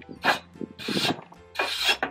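Wire brush scrubbing a rusty metal sculpture made of barrel rings, in three rasping strokes, to knock off loose rust and debris before painting.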